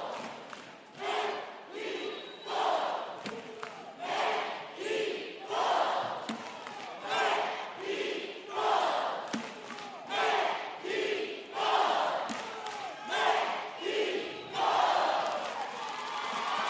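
A coed cheerleading squad shouting a cheer in unison, short group shouts coming about once a second in a steady rhythm, ringing out in a large arena.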